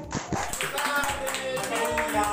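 A small group of people clapping their hands, with music and voices underneath.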